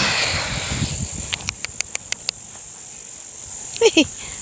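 Meadow insects chirring steadily at a high pitch, with a breathy rush in the first second and a quick run of about eight sharp clicks around a second and a half in. A person's voice comes in near the end.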